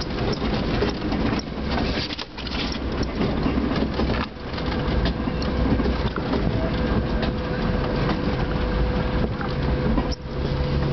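Jeep engine running at low trail speed, with tyres crunching over a rocky dirt track and the body knocking and rattling, heard from inside the vehicle. A thin steady tone joins about halfway through.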